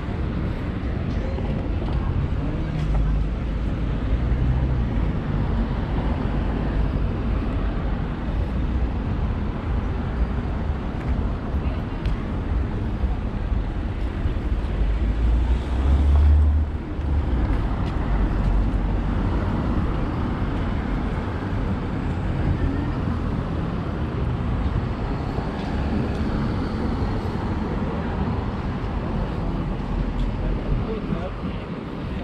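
Busy city street traffic: cars passing on the road with a steady low rumble, and a brief louder low surge about halfway through.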